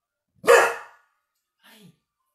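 Thai Ridgeback dog giving a single loud bark about half a second in, followed near the end by a much fainter, brief sound falling in pitch.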